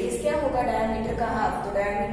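A woman speaking, with a steady low hum underneath.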